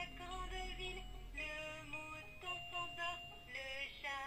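VTech Rhyme & Discover Book toy playing a sung French children's rhyme with electronic music through its small built-in speaker, its animal buttons lighting along with the song.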